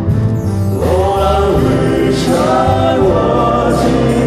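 Male vocal quartet singing a held phrase in close harmony, accompanied by a wind band with sustained low notes.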